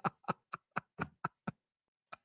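A man laughing in short, breathy pulses, about four a second, that die away about a second and a half in.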